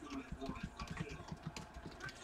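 Typing on a computer keyboard: a quick, irregular run of quiet key clicks.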